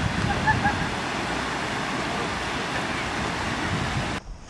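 Steady rush of shallow water flowing over a concrete dam spillway, with faint distant shouting in the first second.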